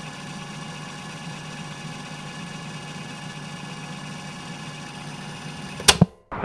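A steady mechanical hum, like an engine idling, with a sharp click near the end.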